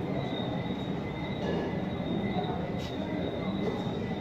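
Steady room background noise, an even rumble with a faint continuous high-pitched whine, as the camera pans across the display.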